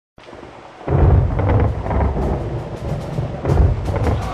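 Thunder sound effect. A faint hiss gives way about a second in to a loud, low rolling rumble with repeated sharp crackles, which carries on.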